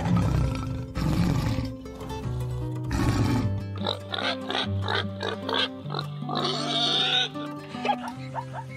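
Pig grunts laid over light background music, with a run of short repeated calls in the second half.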